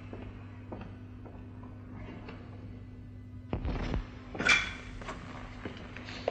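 Faint footsteps, then a door thudding heavily about three and a half seconds in, followed by a sharp clatter with a brief metallic ring, all over a steady low hum.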